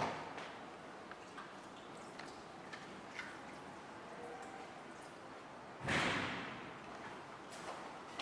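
Water running faintly from a lab sink tap while hands are washed under it, with a few small knocks, then a sudden louder rush about six seconds in that fades over a second.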